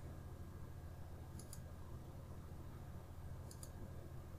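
Computer mouse button clicks: two quick clicks about a second and a half in and two more near the end, over a faint steady low hum.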